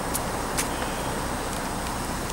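Steady low rumble of outdoor background noise, with a couple of faint brief clicks.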